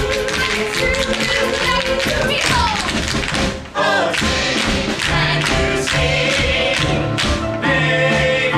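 Show-tune accompaniment with tap dancing on a stage floor: many quick, sharp taps over the music. The music drops out for a moment a little before halfway, then comes back in.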